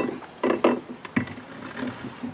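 A metal windlass base plate knocking and clicking against the fiberglass deck as it is set by hand into its sealant-bedded mounting hole: a few short knocks, the sharpest a little past a second in.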